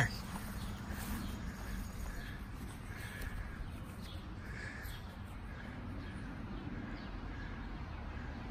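Quiet outdoor background hum with a few faint, short bird calls scattered through the first several seconds.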